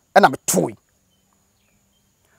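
A man's voice speaking a short phrase in the first second, followed by a pause of faint background.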